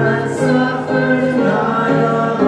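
Congregation singing a slow hymn in held notes, accompanied by an upright piano.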